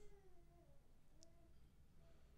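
Near silence, with two faint, distant pitched calls: a falling one lasting about three-quarters of a second, then a shorter one about a second later.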